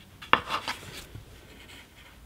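A few light clicks and knocks as hands work at a wooden rigid heddle loom and its stick shuttle. The loudest comes about a third of a second in, and the rest follow within the next second.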